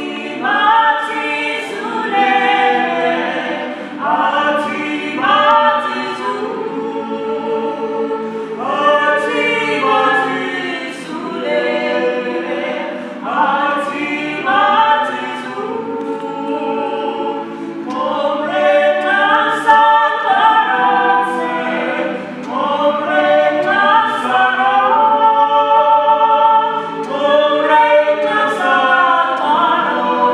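Mixed choir of women's and men's voices singing a Nama traditional song in several-part harmony, in phrases that swell and ease every few seconds.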